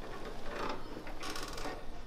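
Soft rustling of clothing as hands shift and press on a patient lying on a padded table, with a brief louder rustle about a second and a half in.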